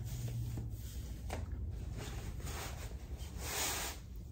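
Faint rustling of a stretchy stocking cap being pulled down over the head, then the wig's hair being handled, with a louder soft swish near the end.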